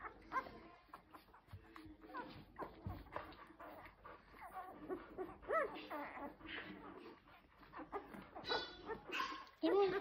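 Ten-day-old golden retriever puppies squeaking and whimpering in short, rising-and-falling cries while they nurse, with a louder, longer whine about nine seconds in.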